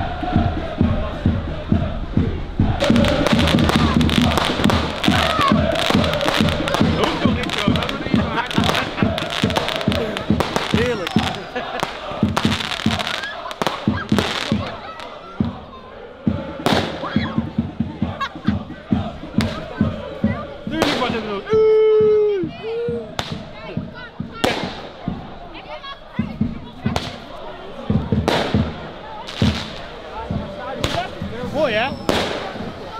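Crowd of football supporters' voices with firecrackers going off, many sharp bangs close together for the first half and scattered ones later. About two-thirds of the way in, a loud held tone sounds for about a second, followed by a shorter one.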